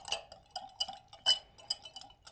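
Wire whisk clicking irregularly against a glass mixing bowl, each tap leaving a brief ring from the glass, as vinegar and Dijon mustard are whisked together.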